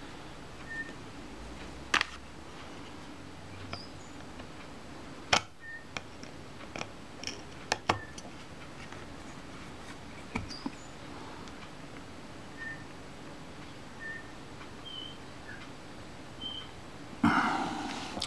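Scattered sharp clicks and taps of an adjustable lens spanner's tips working against the seized front retaining ring of a Mamiya Family SLR leaf shutter, over low hiss; the ring does not turn. A louder burst of handling noise comes near the end.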